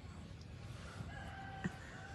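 Faint background noise. About halfway in comes a distant, drawn-out animal call lasting about a second, with a single light click near its end.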